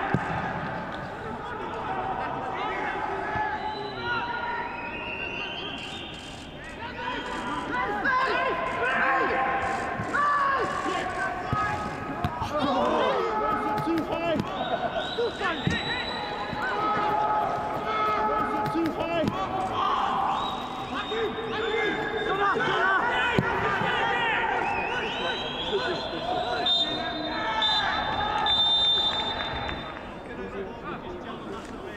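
Footballers shouting and calling to one another on the pitch, with the thud of the ball being kicked now and then. There is no crowd noise: the stands are empty.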